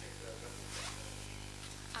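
Quiet hall room tone picked up through the microphone system: a steady low electrical hum under faint rustling.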